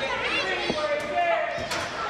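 Raised voices echoing in a large hall, with a few sharp thuds, one about a second in and another near the end.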